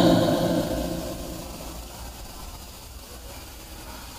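The echo of a man's chanted Quran recitation fades away after a phrase ends, leaving a faint steady hiss for the rest of the pause.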